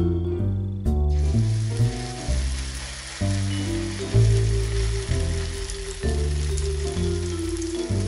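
Grated potato and onion batter sizzling in hot oil in a frying pan, the hiss starting suddenly about a second in as the first spoonful goes in, then running steadily. Background music with low melodic notes plays throughout.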